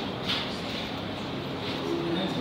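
A pause in a man's lecture, filled by steady background hiss with a short soft hiss about a quarter of a second in.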